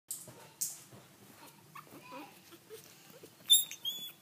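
Four-week-old Chihuahua puppies giving small squeaks and whimpers as they scramble over one another. A sharper, high-pitched squeal comes near the end.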